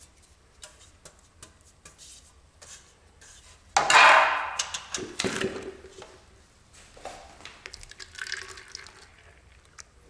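Metal paint tin and its lid clattering loudly on a tiled floor about four seconds in, the metal ringing briefly after, followed by lighter knocks as the tin is handled.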